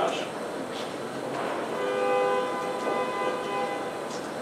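A horn sounds one steady blast of several tones together, about two seconds long, starting a little under halfway in.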